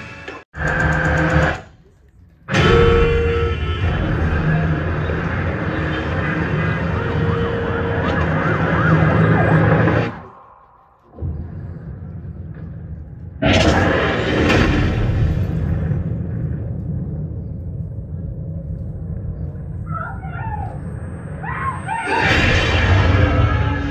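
A movie trailer soundtrack played over cinema speakers, mostly music mixed with effects. It drops out to near silence twice, about two seconds in and about ten seconds in, and comes back suddenly loud about thirteen seconds in.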